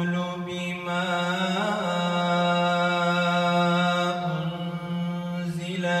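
A man's voice reciting the Qur'an in drawn-out, ornamented melodic tilawah through a handheld microphone. It holds one long note with fine trills and steps down in pitch about four seconds in.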